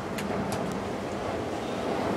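A lift call button is pressed, giving one or two faint clicks, over a steady low background hum.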